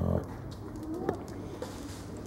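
Reindeer grunting: one short, low grunt right at the start and a fainter one about a second in.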